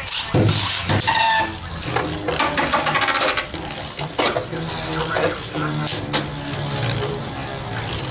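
Two Beyblade spinning tops launched into a plastic dome stadium: a sharp rip right at the start, then the tops spin and clatter, with repeated clicks as they strike each other and the stadium wall.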